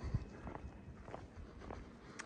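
Quiet, irregular footsteps on a marble floor inside a large stone cathedral.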